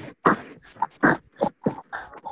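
Laughter and talk coming through a choppy video-call connection, the voices breaking up into short bursts and cutting out abruptly: the stream is suffering network dropouts.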